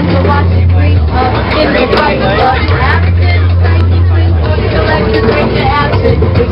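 Loud live amplified music with a deep bass line in long held notes, inside a crowded streetcar, with voices over it.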